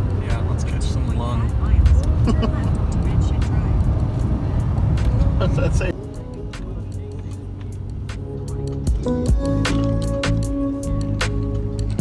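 Low road rumble inside a moving car with music over it; about six seconds in the car noise cuts off and the music carries on alone with steady held notes.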